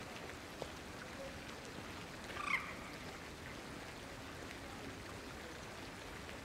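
Steady splashing of a fountain's jets falling into a pond. About two and a half seconds in, a brief higher-pitched sound stands out as the loudest thing.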